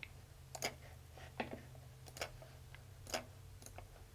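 Faint computer mouse clicks, about half a dozen irregular sharp ticks, over a low steady hum.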